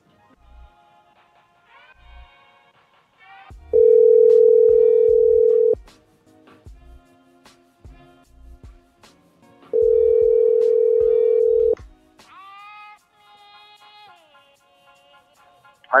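Telephone ringback tone heard down the line: two steady rings, each about two seconds long and six seconds apart, the call ringing unanswered at the far end. Quiet background music plays underneath.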